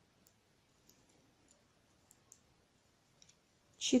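Faint, scattered clicks of metal knitting needles, about six light ticks over a few seconds, as stitches are slipped and passed over during a decrease.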